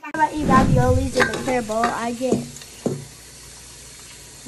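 Kitchen tap water running into mixing bowls in the sink while dishes are washed, a steady hiss. Children's voices sound over it for the first two seconds or so.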